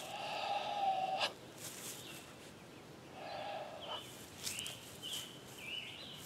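Two long drawn-out animal calls, the first louder and about a second long, the second shorter about three seconds in, followed by a few short bird chirps near the end.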